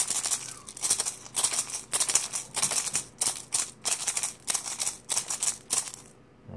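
Handmade musk turtle shell rattle with seven bobcat claws inside, shaken in quick repeated strokes, about two to three a second, each stroke a dry rattle of claws against shell.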